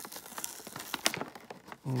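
Packaging being pried and crinkled open by hand: irregular crackles and small clicks, with a sharper snap about a second in. The package is stubborn and hard to open.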